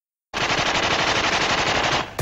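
A sudden, loud, dense rattle of rapid repeated bangs, like automatic gunfire, starting abruptly out of silence about a third of a second in.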